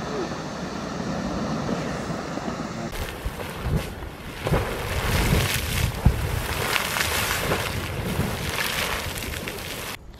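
Old Faithful Geyser erupting: a steady rush of water. About three seconds in, a cut to a smaller geyser close by, its water jetting and splashing in irregular surges.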